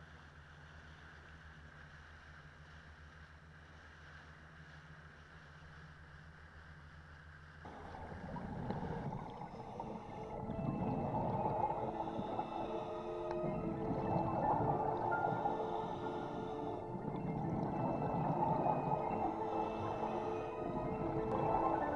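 An inflatable boat's engine running steadily with a low hum, mixed with wind and water noise. About eight seconds in it cuts off abruptly and louder background music takes over, with sustained notes swelling in and out.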